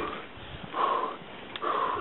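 A man breathing hard while pedalling a bicycle: three loud breaths, under a second apart, from the effort of riding.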